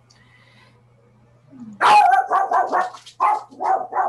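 A dog barking: a quick run of about eight sharp barks, about four a second, starting a little under two seconds in, over a faint steady hum.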